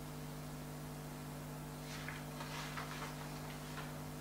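Steady electrical hum with a few faint ticks about halfway through.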